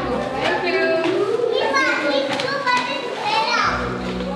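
Several young children's high-pitched voices talking and calling out.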